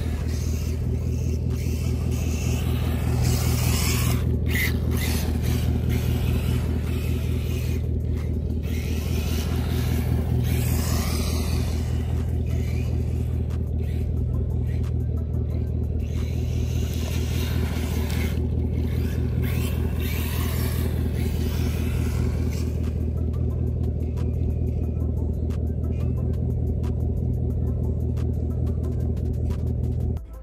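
Brushless motor of a Losi NASCAR RC car with a Furitek sensored system whining as the car drives up and down the street, the pitch rising and falling as it passes, over a steady low hum.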